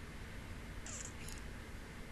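A faint cat meow about a second in, one short call falling in pitch, over a low steady room hum.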